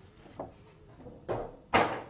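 A Funko Pop cardboard box being slid out of its plastic pop protector: a light tick, then two short scraping rustles, the second near the end and the loudest.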